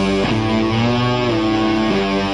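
Live rock band playing an instrumental passage without vocals, carried by ringing guitar chords that change about a quarter second in and again near the end.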